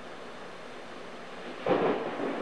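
Steady rain, then a sudden loud clap of thunder about one and a half seconds in that rumbles on.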